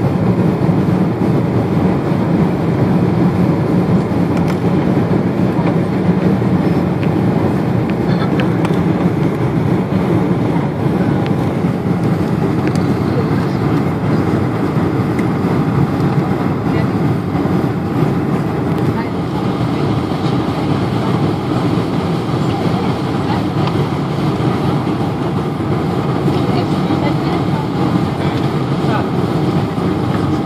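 Steady cabin noise inside a Boeing 747-400 on approach: engine and airflow rumble heard from a window seat over the wing, with the flaps extended.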